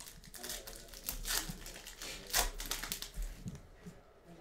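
A foil trading-card pack wrapper torn open and crinkled by hand: a run of sharp crackles, loudest about a third of the way in and again a little past the middle.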